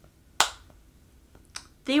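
A single sharp finger snap about half a second in.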